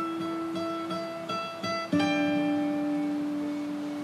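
Instrumental music: a plucked guitar picks short repeated high notes over a long held low note, moving to a new chord about halfway through.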